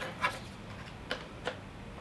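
A few light plastic clicks and taps from the Bunker Kings CTRL paintball hopper's shell and lid being handled.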